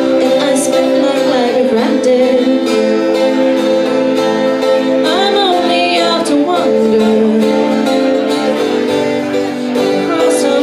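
A woman singing a folk-rock song live, accompanied by a strummed acoustic guitar.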